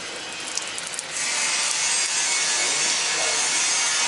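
Water running and splashing down in thin streams from the open end of a large flanged steel pipe: a steady hiss that grows louder about a second in.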